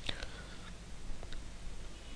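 A pause in a man's narration: faint room noise with a low steady hum, a brief breath or mouth click right at the start, and a couple of tiny clicks later.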